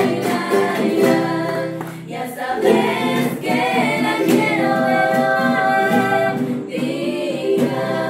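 A woman sings a folk song live, accompanying herself on a strummed charango. Around the middle she holds long notes, then breaks off briefly just before the line resumes.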